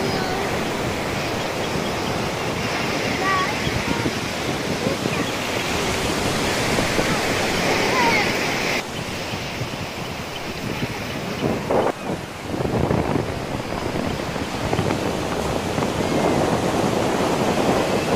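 Surf washing up a beach: a steady rush of breaking waves and foam. About halfway through, the sound changes abruptly and becomes quieter and duller for a while.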